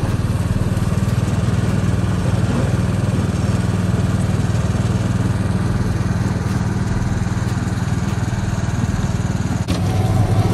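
Small engine of a mortar mixer running steadily under load as it turns a batch of water and stucco cement, with a brief dip just before the end.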